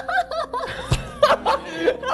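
A woman laughing excitedly in quick, rising-and-falling bursts, with a thump about a second in.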